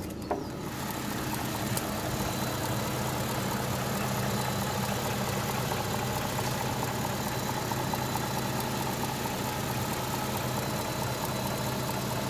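BMW 645Ci's 4.4-litre V8 idling steadily with the bonnet open, coming in about half a second in.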